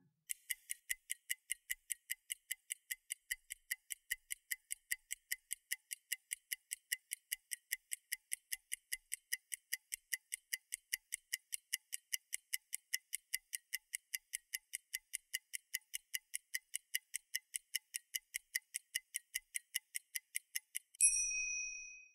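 Countdown timer sound effect ticking like a clock, about four even ticks a second, ending in a short bell-like ding about a second before the end that signals the time is up.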